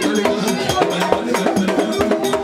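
Haitian Vodou ceremony music: drums with a metal bell struck in a fast, steady rhythm.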